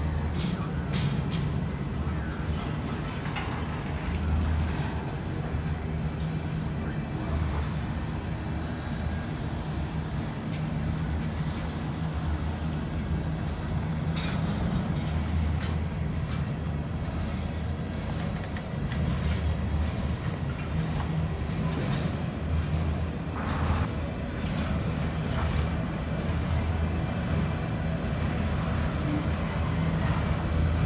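Freight cars rolling past at close range: a steady low rumble of steel wheels on rail that swells and eases as the trucks go by, with a few sharp clicks.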